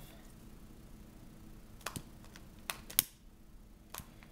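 A few light, sharp clicks and taps from handling a long-neck butane lighter while melting a cut paracord end: two close together about two seconds in, then two more, the loudest about three seconds in.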